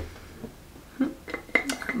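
A few light clicks or clinks about a second in and again shortly after, like a small hard object being handled, with a brief soft vocal sound between them.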